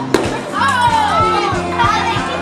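Children's voices shouting and chattering over background music with a steady beat, and one sharp knock just after the start.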